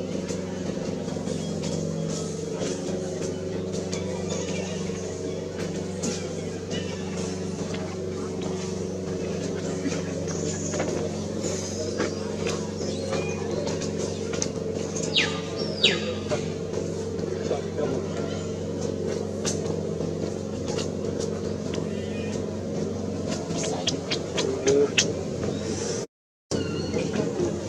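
Steady low engine hum, holding one pitch, with scattered light clicks and two short high falling squeals about fifteen seconds in.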